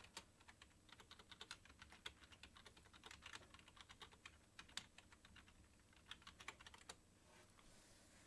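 Faint typing on a computer keyboard: quick, irregular key clicks that die away about seven seconds in.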